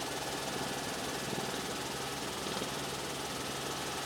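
Steady drone of an aircraft engine in flight, even and unbroken.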